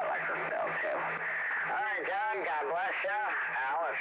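Voice received over a CB radio on lower sideband, thin and cut off in the highs, coming through the radio's speaker without clear words. A faint low hum comes and goes under it.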